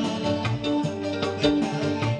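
Live band music: keyboard and electric guitar over a steady hand-drum beat.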